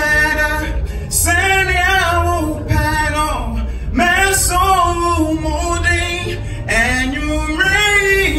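A man singing live into a microphone, an R&B-style vocal in phrases of long, wavering held notes.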